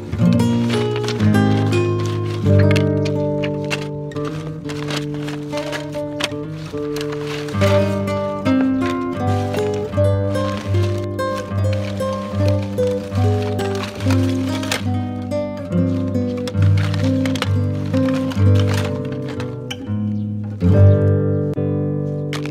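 Background music: a melody of plucked notes over a low note that repeats at a steady beat from about a third of the way in.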